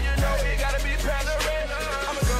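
Hip hop track playing: a deep sustained bass under sharp, regular drum hits and a melodic line in the middle range. The bass thins out briefly near the end.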